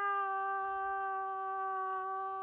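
A woman's voice singing unaccompanied, holding one long note at a steady pitch.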